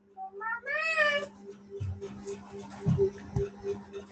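A cat meowing once, a short call about a second in, over a low steady hum, with a few soft low thumps later.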